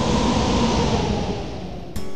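A dense rushing noise with no pitch that swells up and then fades away.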